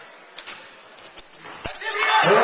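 Basketball court sounds in a sports hall: a few sharp knocks and a short high squeak about a second in, then a low ball bounce, with crowd voices swelling up at the very end.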